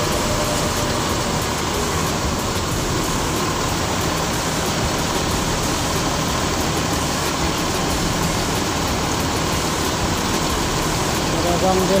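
Steady running of idling buses, with a crowd's voices chattering under it.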